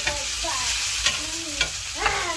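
Chopped tomatoes and onions sizzling in a frying pan while a wooden spatula stirs them, with about four scrapes of the spatula against the pan.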